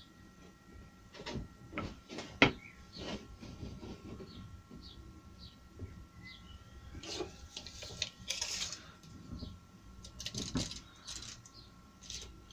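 Cut beech boards being slid and butted together on a workbench: a few light wooden knocks, the sharpest about two and a half seconds in, then a longer scraping slide of wood over the bench top past the middle, and a cluster of clicks near the end as a tape measure is pulled out.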